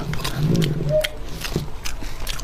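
Close-miked chewing of fatty braised pork belly with the mouth closed, with short wet mouth clicks over a low, steady closed-mouth hum that swells in the middle.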